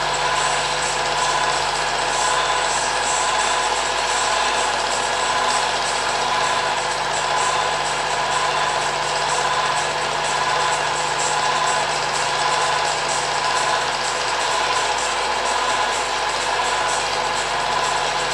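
Cine film projector running, an even mechanical whirring clatter with steady tones that holds at one level throughout.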